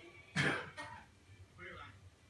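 A single loud cough about a third of a second in.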